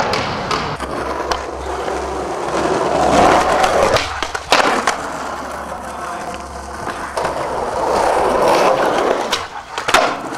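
Skateboard wheels rolling over rough asphalt: a steady grinding roll that swells and fades, broken by a few sharp clacks of the board, the last one just before the end.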